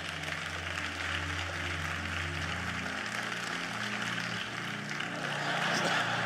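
Soft sustained keyboard chords that change to a new chord about halfway through, over a steady rushing hiss.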